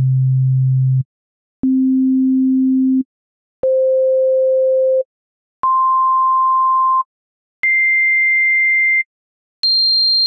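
Pure sine-wave tones from a software synthesizer playing C notes, each an octave above the last, rising from C2 at about 130 Hz to C7 at about 4.2 kHz. Each note is held about a second and a half with a short gap before the next, all at exactly the same level; the highest starts near the end.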